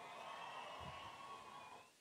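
Faint venue background noise in a pause between spoken phrases: a low even hiss with a faint steady hum, fading and cutting off abruptly just before speech resumes.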